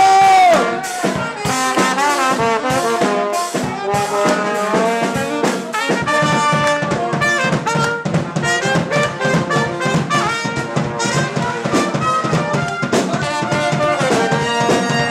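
Trumpet playing a solo of quick melodic runs, opening on a held note that bends, over a ska band's drums and rhythm section.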